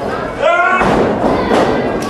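A thump of a wrestler's body hitting the ring about half a second in, with shouted voices around it.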